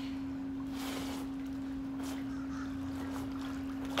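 A steady hum at one unchanging pitch, with faint soft splashing of pool water.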